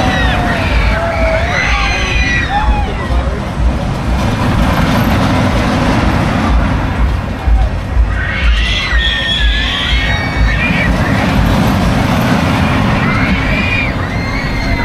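Busy fairground midway: a steady, gusty rumble of wind on the microphone under crowd noise, with bursts of high screams from riders on a loop thrill ride near the start, around the middle and near the end.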